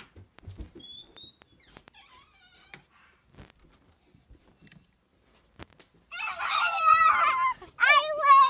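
A few faint knocks and clicks, then about six seconds in a young child's loud, high-pitched, wavering wail that lasts to the end.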